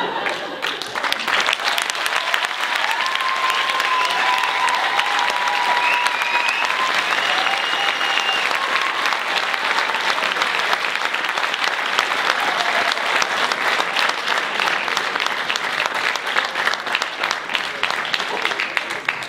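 Theatre audience applauding: dense, steady hand clapping that swells in right at the start and carries on throughout, with a few long calls from the crowd rising over it a few seconds in.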